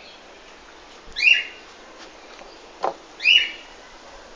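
A dog whining: two short, high-pitched cries about two seconds apart, with a brief falling squeak just before the second.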